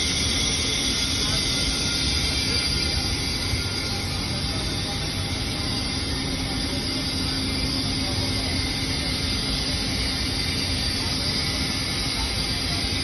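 Steady rushing hiss of cryogenic oxygen supply pipework, with a faint, even hum underneath.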